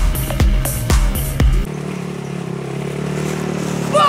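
Electronic dance music with a thudding beat about twice a second, which cuts off abruptly a little before halfway. A small off-road buggy's engine then runs with a steady low hum.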